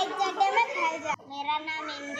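A young girl speaking.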